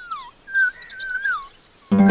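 Whistly bird-like chirps gliding down, holding, then wavering, over about a second and a half. A loud held musical chord cuts in suddenly near the end.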